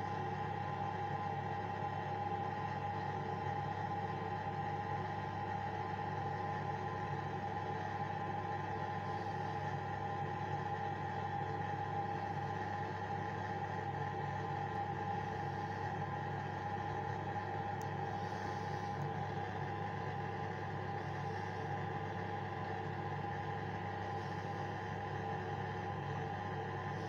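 A steady, unchanging machine hum with a constant pitch that neither rises nor falls.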